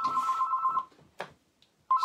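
Telephone ringing, a steady ring of two tones that stops a little under a second in. A single click follows, then the ring starts again near the end.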